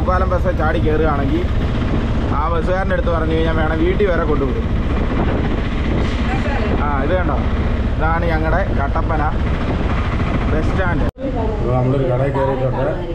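Auto-rickshaw engine running with a steady low rumble as the vehicle drives, with a voice over it; the sound cuts off sharply near the end.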